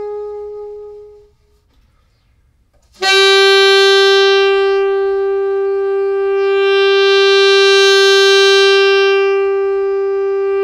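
Solo alto saxophone: a held note fades away within the first second or so, then after a short silence a long, steady note at about the same pitch starts suddenly and is held loud to the end.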